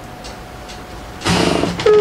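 Quiet room tone with a faint steady hum, then a short burst of a person's voice about a second and a quarter in.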